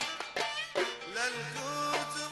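Kuwaiti Gulf-style song with ensemble accompaniment. A few sharp percussion strokes in the first second give way to a melodic line of wavering pitch over a held low note.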